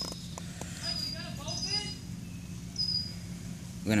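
Faint, low voices with a few short, high-pitched chirps over an outdoor background.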